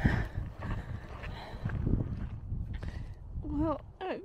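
Footsteps on a dirt trail, an irregular run of steps over a low rumbling background. Near the end comes a short voiced sound from the walker.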